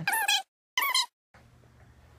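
Two short, high-pitched falsetto squeals from a man's voice in the first second, each cut off sharply, with dead silence between them.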